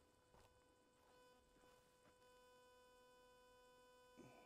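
Near silence, with a faint steady hum.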